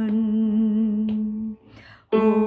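A singing voice holds one long note of a hymn line with a slight vibrato, stopping about a second and a half in, followed by a short breath.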